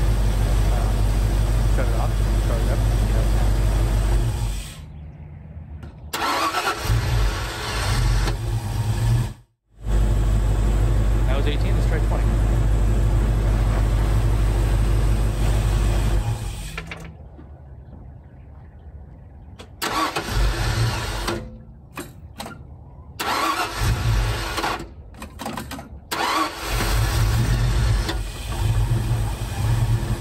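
Ford 289 V8 running in long steady stretches, then started several times in short bursts with drops between. It is reluctant to start with the base timing advanced to 20 degrees.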